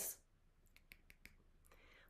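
Near silence: quiet room tone with a handful of faint, short clicks about a second in.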